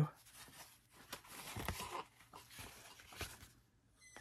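Faint rustling and light flicks of a stack of vintage cardboard bingo cards being leafed through by hand.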